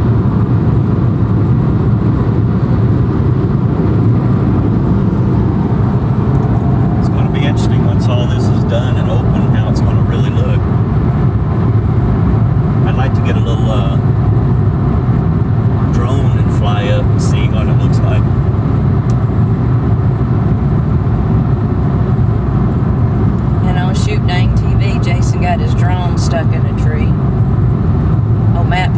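Steady road and engine noise of a Chevrolet Spark cruising at highway speed, heard inside the cabin as a continuous low rumble, with voices now and then.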